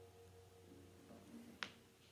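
Near silence: the last slide-guitar notes of a National Style O-14 resonator guitar dying away, with a few faint notes sounding briefly about a second in. A single sharp click comes near the end.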